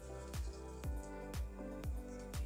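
Background music with a steady beat, about two beats a second, over held chords.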